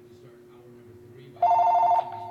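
Telephone ringing: a loud, trilling electronic ring of two close tones begins about one and a half seconds in.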